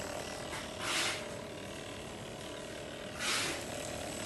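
Cordless percussion massage gun running at its strong setting, its motor giving a quiet, steady hum. Two brief rushes of hiss stand out, about a second in and near the end.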